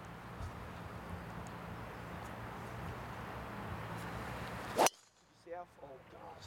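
Golf driver striking a teed-up ball: one sharp, loud crack about five seconds in, over a steady low background hum.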